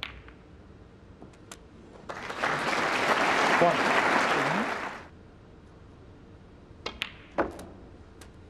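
Snooker shots: the sharp click of a cue on the cue ball and of balls striking one another at the start, then audience applause lasting about three seconds. Another shot near the end gives two more clicks, cue on cue ball and then the ball contact.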